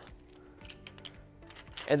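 Faint clicks and light metal knocks of a 9.Solutions Savior clamp being handled and fitted into the grip head of a C-stand arm, over quiet background music.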